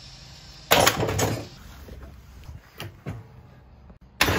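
Small rubber-tyred sack-truck wheels thrown down onto a workbench: one loud thud with a short clatter dying away, about a second in, then a few lighter knocks.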